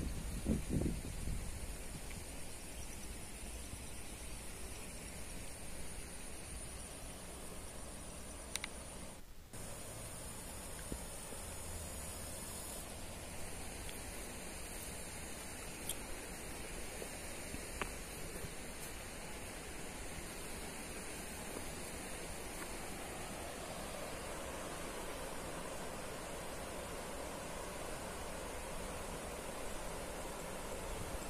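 Steady outdoor ambience, an even rushing noise, with a few handling bumps in the first second and a brief dropout about nine seconds in. The rushing grows fuller over the last several seconds.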